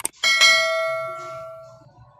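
A sharp click, then a single bell ding that rings on and dies away over about a second and a half: the click-and-bell sound effect of a YouTube subscribe-button animation.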